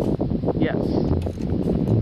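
Wind buffeting the camera microphone, a dense low rumble, with a short spoken "yes".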